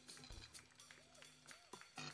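Faint, sparse jazz drumming: light cymbal or hi-hat taps in a steady pulse, with a soft kick-drum thud near the start.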